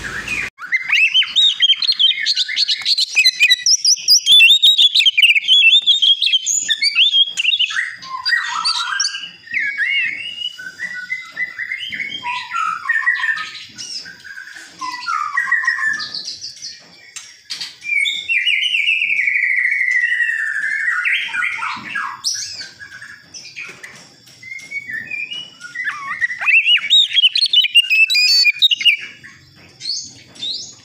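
Oriental magpie-robin of the white-breasted form singing a long, varied song of rapid chirps and clear whistles. There is a longer drawn-out phrase about two-thirds of the way through, then a short lull before the quick notes pick up again.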